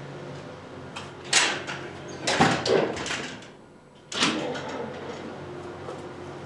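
Commercial glass door's push-bar latch clacking and the door rattling as it is pushed open and swings. There are knocks about a second in, a cluster of clacks around two and a half seconds, and a last sharp clack about four seconds in.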